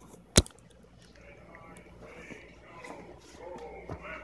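A single sharp knock about half a second in, then a young child's quiet babbling that grows louder.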